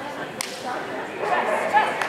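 A person laughing over the murmur of a large indoor hall, with one sharp click about half a second in.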